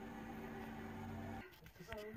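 A faint, steady low mechanical hum that stops abruptly about one and a half seconds in.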